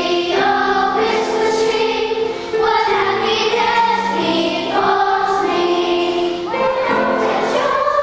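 Children's choir singing in unison, held notes moving every second or so, with short breaks between phrases about two and a half and six and a half seconds in.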